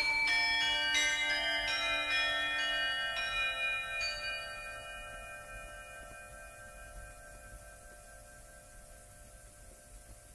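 A set of tuned bells struck in a quick run of notes, about three a second over the first few seconds, then left to ring together and fade slowly away.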